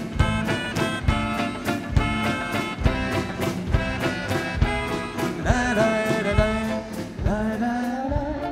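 A live band playing an upbeat song with a steady beat. A melody line with sliding pitch comes in about five and a half seconds in.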